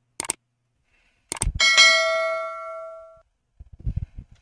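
Subscribe-button animation sound effects: a quick double mouse click, another click about a second later, then a bright bell ding that rings and fades away over about a second and a half. A few faint soft ticks follow near the end.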